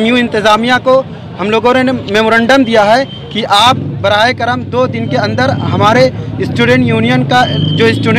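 A man speaking continuously into reporters' microphones, with a low steady rumble under his voice from about halfway.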